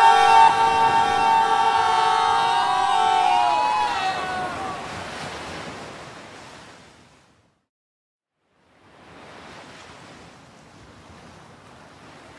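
A group of men cheering together in a long held shout that slides down in pitch and fades away over the first few seconds. After a brief silence comes a faint, steady wash of ocean surf.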